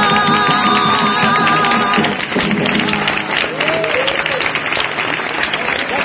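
A Cádiz carnival chirigota's massed voices with guitars holding the final chord of their popurrí, which breaks off about two seconds in. The audience then applauds, with a few shouts over the clapping.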